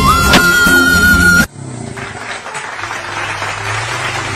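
Loud music with a held high note, cut off abruptly about a second and a half in. It gives way to a quieter motorcycle engine running with a steady low hum.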